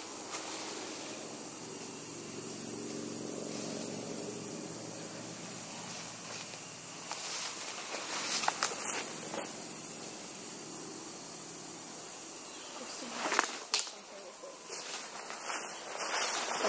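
Steady high-pitched hiss of insects in woodland, with light rustling and footsteps through the undergrowth and two brief sharp sounds about thirteen seconds in.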